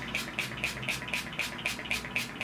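Mario Badescu lavender facial spray's pump mist bottle spritzed repeatedly over the face: a rapid run of short hisses, about six a second.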